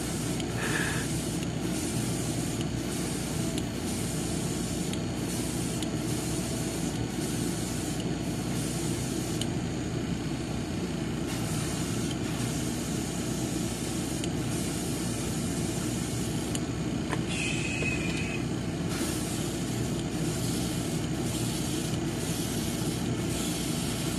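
Airbrush hissing in short, repeated trigger bursts as it sprays red paint onto a small plastic model part, over a steady machine hum.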